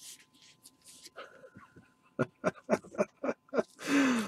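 Soft rustling of trading cards handled in gloved hands, then a man laughing in a quick run of short breathy pulses, about five a second, that start about halfway through and end in a louder exhale.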